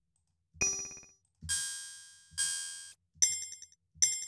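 Ableton's DS Clang FM drum synth played through a Phaser-Flanger: four metallic electronic hits about a second apart, each fading out. The tone changes from hit to hit as the rack's macros are randomized.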